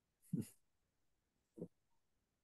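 A person's brief, quiet laugh: a short breathy chuckle, then a fainter second one about a second later.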